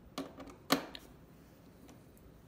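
A few sharp clicks and taps of a screwdriver and a T15 Torx screw on the plastic top panel of a Jura Impressa espresso machine as the screw is taken out. The loudest click comes about three-quarters of a second in.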